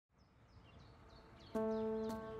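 Faint outdoor ambience with a small bird giving a string of short, falling chirps. About one and a half seconds in, music starts with a single clear pitched note that rings on.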